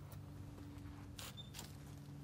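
Quiet outdoor background with a faint steady hum, broken just over a second in by a brief scuffing noise.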